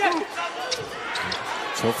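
A basketball being dribbled on a hardwood court: a few sharp bounces over the low background noise of the arena.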